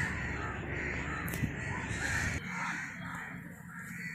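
Birds calling repeatedly in short, arching calls over a low rumble of wind on the microphone; both drop away abruptly a little past halfway.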